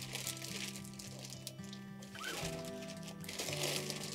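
Soft background music with steady held low notes, and faint crinkling of a plastic ziplock bag being handled.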